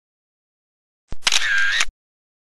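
A short sound effect about a second in: a sharp click, a brief bright whirr with a wavering tone, and a closing click, lasting under a second.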